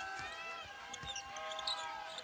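Basketball dribbled on a hardwood court, bouncing several times about half a second apart, with sneakers squeaking on the floor.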